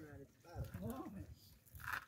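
Speech only: a man's voice calling out short words, fairly quiet.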